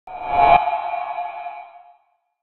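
Logo-intro sound effect: a quick swell with a low rumble that stops about half a second in, leaving a ringing tone that fades away over the next second and a half.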